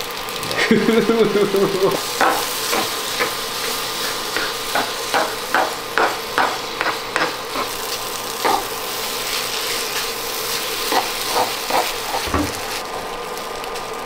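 Sauce-coated rice sizzling as it fries in a nonstick pan. A wooden spatula stirs and scrapes it in a run of short strokes, about two a second through the middle, with a few more near the end.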